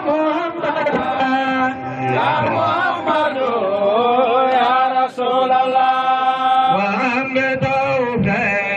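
A male voice chanting a devotional Islamic praise song over a loudspeaker system, holding long notes with wavering ornaments that glide up and down.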